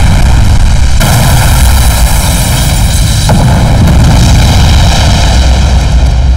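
A loud, unbroken roar with a heavy low rumble, the film's sound effects for a bomb blast around a car. It grows brighter and hissier about a second in.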